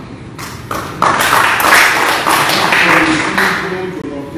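A small group of people clapping, starting sharply about a second in and dying away near the end.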